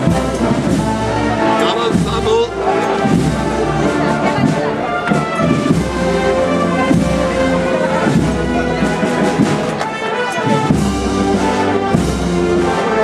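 Brass band playing a slow processional march.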